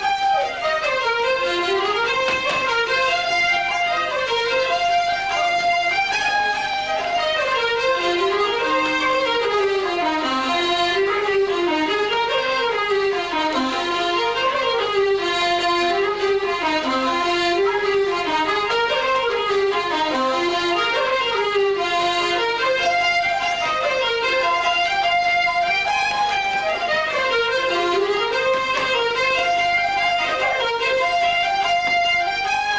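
Irish traditional dance tune played on fiddle, button accordion and flute: a quick, continuous run of notes rising and falling, played for set dancing.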